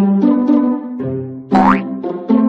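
Bouncy plucked-note background music, with a short sound effect rising quickly in pitch about one and a half seconds in.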